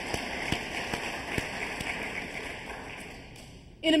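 Audience applauding, the clapping fading out near the end.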